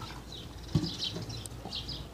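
Quiet pool-side background as the water settles after a jump, with one brief faint knock about three-quarters of a second in.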